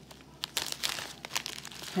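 Clear plastic zip-lock bag of dried mulberry leaves crinkling as gloved hands turn it. The crinkles start about half a second in and come irregularly.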